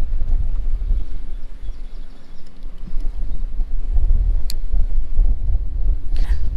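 Wind buffeting the microphone: a loud, uneven low rumble, with one short sharp click about four and a half seconds in.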